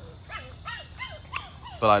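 Puppies yipping as they play, about four short high yelps that each fall in pitch, with a sharp click near the end.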